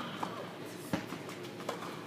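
Tennis balls being struck and bouncing in an indoor tennis hall: a few sharp pops, the loudest about a second in.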